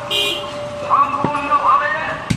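A long butcher's knife chops once into a goat leg on a wooden log block, a sharp knock about a second in, with voices and street noise around it.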